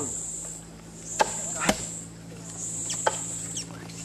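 Wooden planks and poles being handled and knocked together, with three sharp knocks about a second in, half a second later and about three seconds in, over a steady high-pitched whine.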